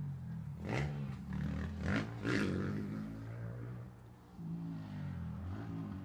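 A dirt bike engine running at a distance, its pitch rising and falling as it is ridden, with a few short rustles over it.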